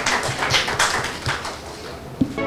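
A small audience clapping, the claps thinning out and dying away near the end.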